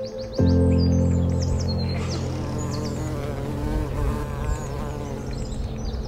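A deep sustained music note begins suddenly about half a second in and slowly fades. Over it, small birds chirp, and between about two and five seconds in a flying insect buzzes, its pitch wavering as it moves.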